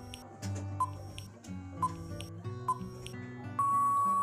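Background music under a quiz countdown-timer sound effect: short high beeps about once a second, then a long steady beep near the end as the time runs out.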